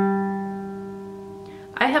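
Low-G fourth string of a ukulele plucked once with the thumb: a single low note that rings on and fades away over about two seconds.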